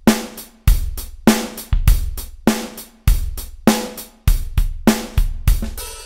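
Recorded drum kit groove playing back from a DAW: kick, snare and hi-hat/cymbals in a steady beat. The dry drums are blended with a parallel compressed bus whose fader is being raised, which changes the overall volume of the drums.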